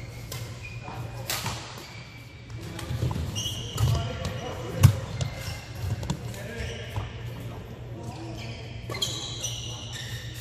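Badminton doubles rally: sharp racket strikes on a shuttlecock, the loudest a crisp crack about five seconds in, with shoes squeaking on the court mat and footfalls between shots, over a steady low hall hum.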